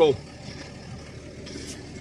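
New Holland T7040 tractor's six-cylinder diesel engine running steadily under way, heard as an even hum from inside the cab.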